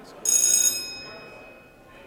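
A single bright, bell-like ring that starts suddenly about a quarter second in, holds briefly and fades away over about a second, with low murmured talk underneath.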